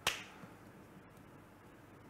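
A single sharp snap right at the start, dying away within a fraction of a second, followed by faint room tone.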